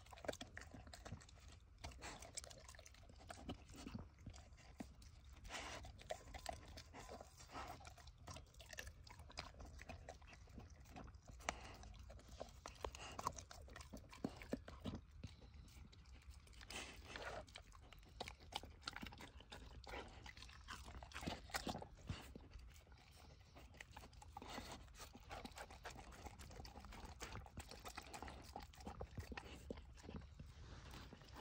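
A dog eating from a plastic plate: faint, irregular chewing and crunching with scattered short clicks, no steady rhythm.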